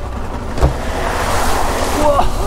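Suzuki V-Strom 650 motorcycle ploughing through a deep mud puddle: a knock about half a second in, then a swelling rush of splashing muddy water.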